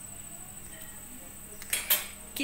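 Steel kitchen tongs and a spatula clinking together, with a short loud clatter near the end over a faint steady hiss.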